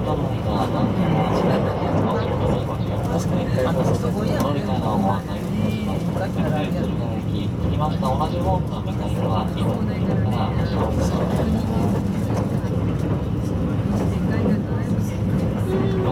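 Steady running rumble of a JR West 681 series electric train at speed, heard from inside the passenger car, with passengers chattering throughout.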